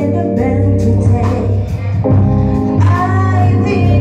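Live band playing loud: electric bass, drums and sung vocals.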